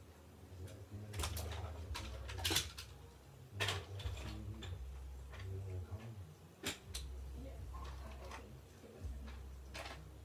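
Scattered faint knocks, clicks and rustles over a steady low hum, a handful of them louder than the rest.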